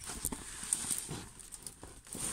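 Crinkling and rustling of a diamond-painting canvas's plastic film cover as it is handled, with a few irregular light taps.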